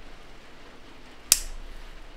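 Wire cutters snipping once through a thin pre-tinned headphone wire, a single sharp click about a second and a half in, trimming the wire to length before it is soldered to the jack pin.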